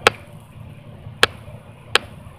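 Three sharp, short clicks, the first at the start, the second about a second later and the third near the end, over a low background hiss.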